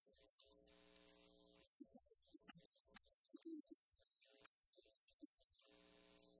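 Faint electrical mains hum, a low steady buzz with several overtones. It comes in for about a second near the start and again near the end, with scattered short faint sounds in between.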